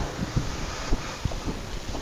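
Wind noise on the microphone, with a few short, low thumps.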